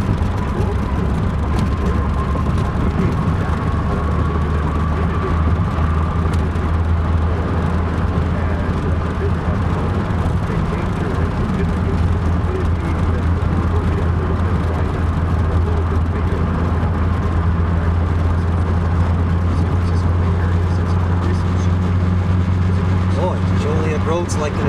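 Steady low drone of a car's engine and tyres heard from inside the cabin while driving at road speed, with a faint whine rising in pitch over the first few seconds as the car gathers speed.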